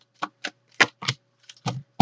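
A deck of oracle cards shuffled by hand: a string of sharp card slaps and clicks with uneven gaps, several a second.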